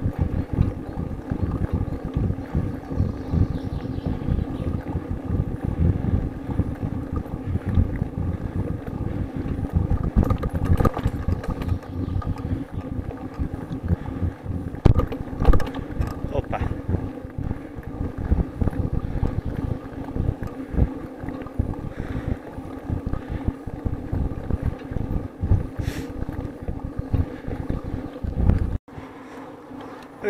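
Wind buffeting and road rumble on a vehicle-mounted camera's microphone while riding slowly over cracked asphalt, with a faint steady hum underneath. The sound drops away suddenly near the end.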